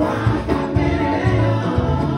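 Women's gospel praise team singing together into microphones, over live backing with a deep bass line and a steady beat.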